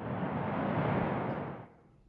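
A glass elevator car travelling, heard as a steady rushing noise that swells and then fades out about a second and a half in.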